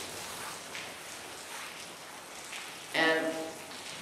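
Steady hiss of falling rain. A brief voice is heard about three seconds in.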